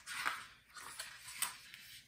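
A page of a picture book being turned: a paper rustle and swish lasting most of two seconds, with a small sharp snap about one and a half seconds in.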